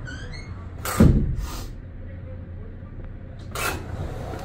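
A loud thump about a second in over a steady low rumble, with a brief run of high chirping squeaks just before it and a short hiss near the end.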